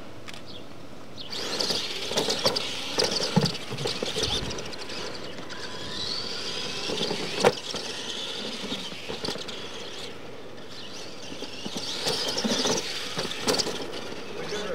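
Radio-controlled monster trucks racing on a dirt track, their motors whining up and down and their tyres scrabbling on the dirt. The sound starts about a second in, with a single sharp knock about halfway through and another surge near the end.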